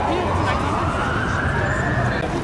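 A siren wailing, its pitch rising slowly through the whole stretch, over the murmur of street noise and voices.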